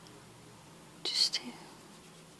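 A short breathy, whispered sound from a woman's voice about a second in, over low room tone.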